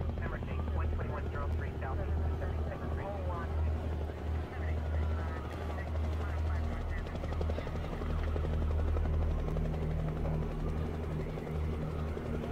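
A low, steady rumble that throbs without letup, like a motor or rotor running, under faint background voices.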